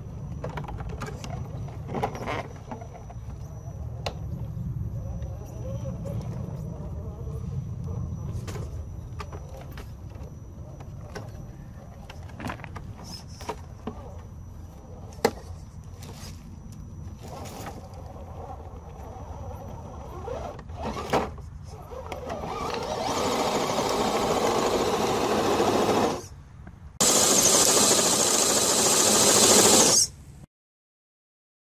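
Small electric RC rock crawler (Axial SCX10 II with a brushed 35-turn motor) crawling slowly over rocks: a low motor and gear whir with frequent clicks and knocks of tyres and chassis on stone. Toward the end a much louder rushing noise takes over, breaks off for about a second, then comes back.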